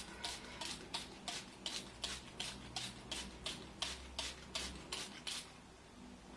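Finger-pump spray bottle spraying water, pumped rapidly about three times a second, some fifteen short sprays in a row that stop a little before the end.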